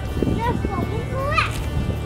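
A young child's high-pitched voice calling out without words, rising to a squeal near the end, over steady background music.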